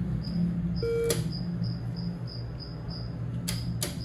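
A cash machine gives a short electronic beep about a second in, over a steady low hum and a high chirp repeating about four times a second. Sharp clicks come just after the beep and twice near the end.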